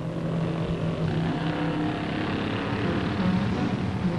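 Motorcycle engines running at low speed as motorcycles ride in, their note shifting up and down a little.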